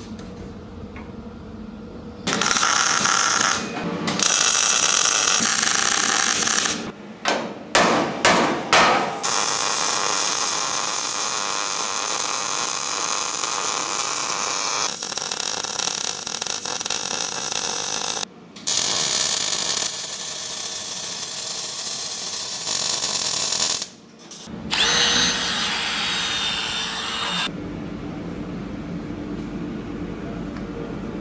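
MIG welding on steel body mounts: a few short tack-weld bursts, then longer welds lasting several seconds each, with brief pauses between them.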